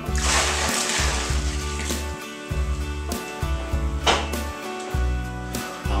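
Hot water poured from a jug into a plastic fermenting bucket, a splashing rush for about the first two seconds. Background music plays throughout.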